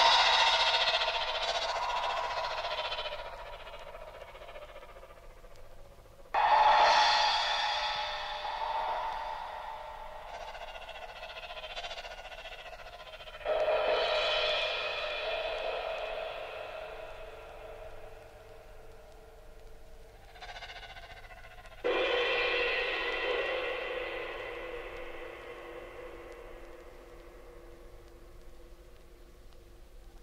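Electronic tape music (1960s Czechoslovak musique concrète): sudden bright struck sounds that ring and fade slowly, three times about seven to eight seconds apart, over a faint steady low hum.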